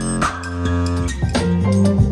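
Music with a changing bass line and percussive hits, played through a pair of ELAC bookshelf speakers driven by a 1989 Hifonics Pluto VII car amplifier as a listening test of the amp.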